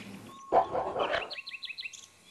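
Cartoon sound effects: a short burst about half a second in, then a quick run of short high chirps, about ten a second, near the end.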